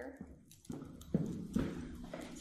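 Footsteps on stairwell steps, about two steps a second.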